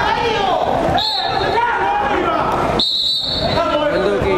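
Two blasts of a referee's whistle, each under a second long and about two seconds apart, over players' voices.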